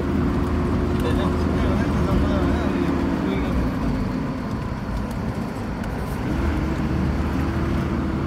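Car engine and road noise heard from inside the moving car as a steady low rumble. The engine note drops away about three seconds in and climbs back up about six seconds in.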